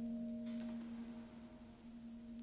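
Slow ambient piano music: a held low chord rings on and slowly fades away, with a faint soft hiss about half a second in.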